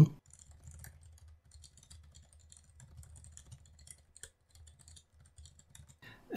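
Faint typing on a computer keyboard: quick, irregular keystrokes over a low, steady background hum.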